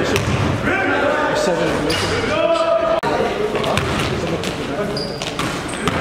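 Basketball being dribbled on a gym floor, with short high sneaker squeaks near the end, over players' voices in a large echoing gym.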